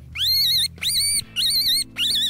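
Hand-held fox call blown by mouth, giving three high, wavering squeals in quick succession to draw a fox in.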